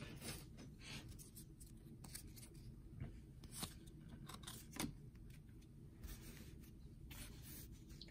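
Faint, soft flicks and slides of baseball trading cards being thumbed through one at a time, the card stock brushing against the stack in a few irregular strokes, the clearest near the middle.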